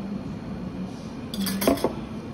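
A metal spoon clinking against a stainless steel milk pitcher: a quick cluster of ringing metallic clinks in the second half, over a low steady hum.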